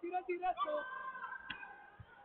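Shouting voices from the sidelines: a few short cries, then one long held call, with a single sharp knock about one and a half seconds in.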